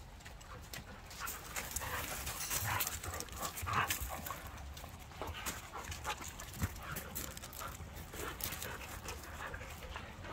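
Two dogs play-wrestling on gravel and flagstones: irregular scuffling of paws and bodies mixed with the dogs' breathing and short vocal noises, loudest about four seconds in.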